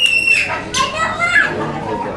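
Young children's voices calling out and chattering, opening with one loud, high-pitched squeal held for about half a second.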